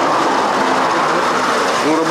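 Steady rushing noise of a septic truck discharging sewage through its hose into the sewer, with faint voices over it.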